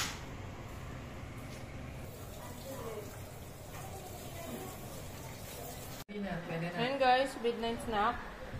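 A low steady hum with faint voices in the background for about six seconds, then, after an abrupt cut, several people talking loudly.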